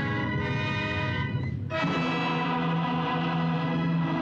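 Orchestral music playing sustained full chords, with a brief drop and a change to a new chord with a strong low note a little under two seconds in.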